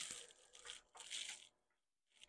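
Loose chainsaw chain rattling and clinking against the bar as it is worked back on by hand, in three short bursts over about a second and a half.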